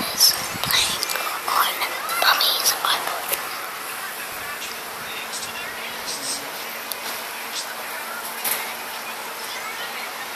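A young child whispering and making breathy noises close to a phone's microphone for about the first three seconds, then quieter room tone with a faint low hum and a few small clicks.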